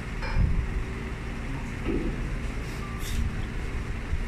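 Steady low background rumble with a soft low bump about half a second in.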